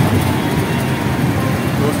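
Auto-rickshaw in motion, heard from inside the open cabin: its small engine and the road noise make a steady low rumble.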